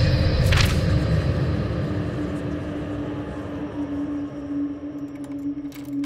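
Horror film sound design: a deep rumble that fades away over the first few seconds under a steady low drone tone. There is a brief hiss about half a second in and a few sharp clicks near the end.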